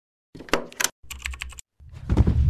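Rapid sharp clicking like typing on a computer keyboard, in two short bursts, then a louder low thump near the end, as the intro's sound effect.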